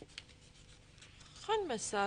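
Faint scratching with a brief tick, then near the end a short vocal exclamation from a person, its pitch sliding steeply down into a held voiced sound.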